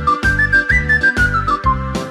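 A fipple whistle playing a quick tarantella melody that steps up and then back down, over a backing track with a steady pulsing beat.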